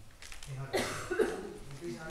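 A person coughs about a second in, a short harsh burst, amid a man's untranscribed speech.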